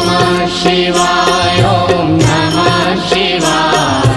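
Devotional Hindu chanting sung to music: a mantra-style vocal melody over steady instrumental accompaniment.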